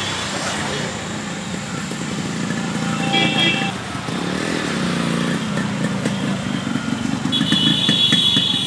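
Yamaha RX100's two-stroke single-cylinder engine running and revving at low speed. A brief high tone comes about three seconds in, and a longer one near the end.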